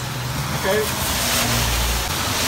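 A car passing on a wet road: tyre hiss on the wet surface grows louder over the second half, along with a low engine rumble.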